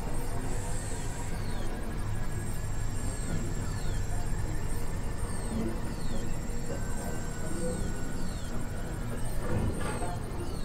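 Experimental electronic noise music: a dense, grainy low drone under a thin steady high whine, with short falling electronic chirps about once a second.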